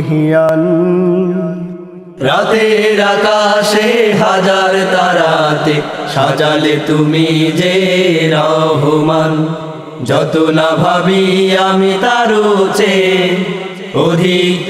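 A Bengali Islamic song (gojol) sung by a vocal group over a steady low drone, with short breaks between phrases about two seconds in and again near ten seconds.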